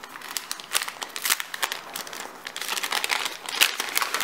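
A paper gift bag rustling and crinkling in quick, irregular crackles as it is unfolded and opened by hand.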